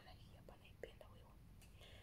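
Near silence: room tone with a couple of faint soft clicks.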